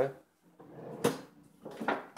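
Hands handling objects: a soft rustle, then two sharp clicks, one about a second in and one near the end.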